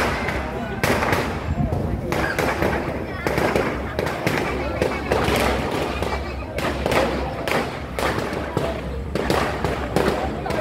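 Firecrackers going off in irregular, rapid bangs over the chatter of a dense crowd.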